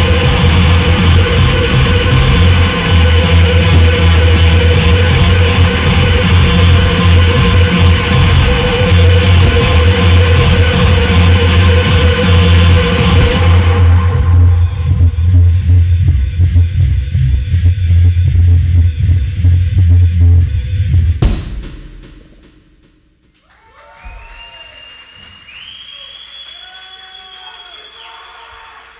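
Harsh noise music from electronic gear and drums played very loud, a dense wall of noise over a heavy low drone; the top end drops out about halfway through and the whole thing cuts off with a sharp hit a few seconds later. After a short quiet stretch, a few gliding, bending electronic tones sound near the end.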